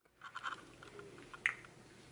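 Faint rustling and small clicks over room tone, with one sharper click about one and a half seconds in.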